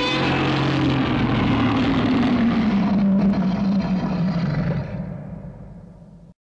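Godzilla roar sound effect: a loud, harsh roar that starts high and slides down in pitch, then holds a lower note and fades away near the end.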